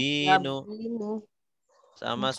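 A person's drawn-out voice calling out, with a sliding pitch, that trails off a little over a second in, followed by a short pause.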